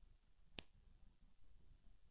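Near silence: room tone, broken by one sharp click a little over half a second in.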